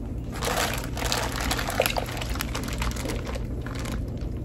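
Chopped green peppers and pineapple with their juice tipped out of a plastic bag into a slow cooker crock over pork roasts, the juice pouring and the pieces dropping in.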